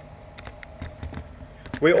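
Laptop keys clicking lightly, a run of about eight irregular taps in under two seconds. Speech starts near the end.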